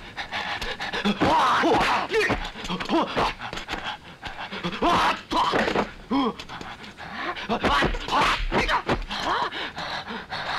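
Kung fu film fight: the fighters grunt, pant and shout in short bursts, over a run of sharp dubbed punch and kick impacts.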